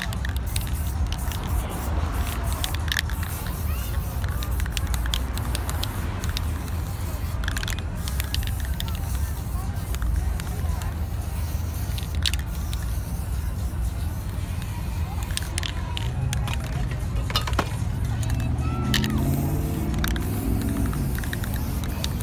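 Aerosol spray-paint cans hissing in bursts, with scattered short clicks, over a steady low street rumble. A few pitched, music-like tones come in near the end.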